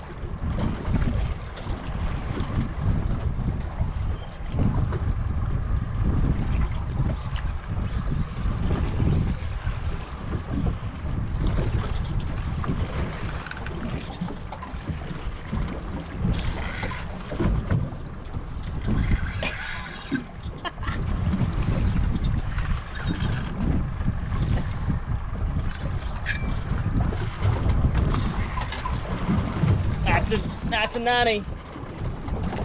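Wind buffeting the microphone over water moving against a small boat's hull, with a few faint clicks.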